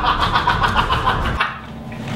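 Young men laughing together over a low rumble. Both stop abruptly about a second and a half in.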